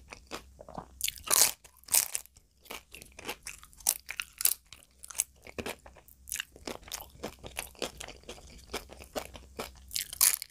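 Close-miked crunching and chewing of crisp papad (papadum), a dense, irregular run of sharp crunches, loudest about a second and a half in.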